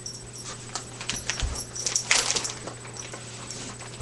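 A pet dog whimpering, over scattered light clicks and rustling, with a louder burst about two seconds in.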